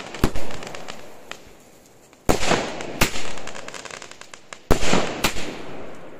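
Aerial fireworks bursting: about five sharp bangs spread across a few seconds, each trailing off in crackling.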